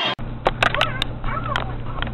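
High-pitched, voice-like calls that rise and fall, with several sharp clicks in the first second and a half, over a steady low hum.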